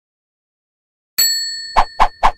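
Silence, then about a second in a single bright bell-like ding that rings on and slowly fades, followed near the end by a short sharp percussive hit: the opening sound effects of an animated logo intro.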